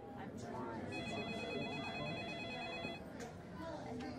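A telephone ringing with an electronic warble for about two seconds, starting about a second in, over a background of indistinct chatter.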